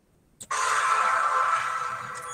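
Title-card sound effect: after a brief click, a sudden loud whoosh with a steady ringing tone starts about half a second in and holds, easing slightly near the end.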